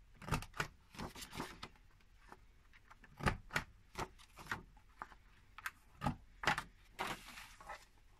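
Corner-rounder punch on a Stampin' Up! envelope punch board being pressed through designer paper at each corner in turn, giving sharp clicks, often in quick pairs, every few seconds. Paper rustles as it is turned and slid against the board between presses.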